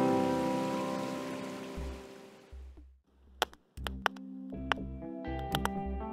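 An acoustic guitar's last strummed chord rings out and fades over about three seconds. After a brief quiet, a campfire crackles with sharp pops, over soft, steady music.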